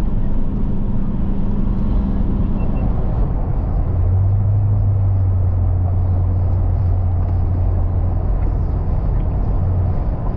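Steady engine and road noise inside a moving SUV's cabin. About three seconds in, the steady hum drops to a lower, stronger drone that holds to the end.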